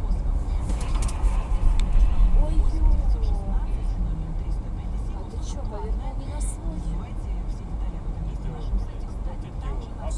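A car's engine and road rumble heard from inside the cabin while driving, with faint, indistinct voices over it. It is heaviest in the first half and eases off toward the end.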